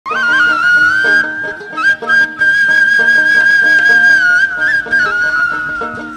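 Background music with a high, flute-like melody that holds one long note through the middle, over a repeating lower accompaniment.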